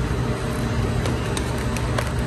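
Steady low hum and even background noise of a large store, with a few faint ticks from the clear plastic egg carton being handled.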